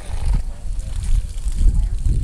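Steady low rumble of wind buffeting the microphone, with faint distant voices underneath.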